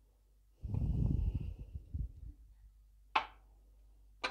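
Kitchen handling noise: a muffled rumble lasting over a second, then a single sharp knock about three seconds in, as a small glass jar is set down on the counter.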